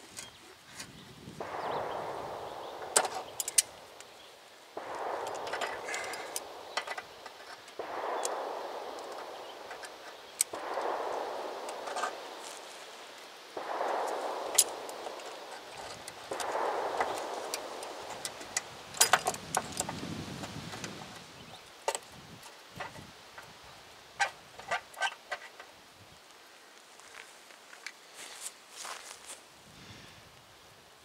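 Hand tools working a rusted brake line fitting loose: six scraping strokes, each a second or two long and about three seconds apart, with sharp metal clicks between them. Lighter clinks of the freed metal follow near the end.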